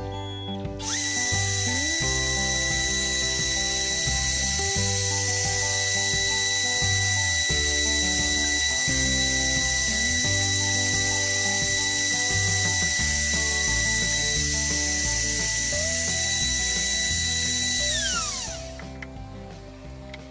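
Trim router serving as the spindle of a homemade CNC router spins up about a second in and runs with a steady high whine while milling holes in an MDF board, then winds down with a falling pitch near the end. Background music plays underneath.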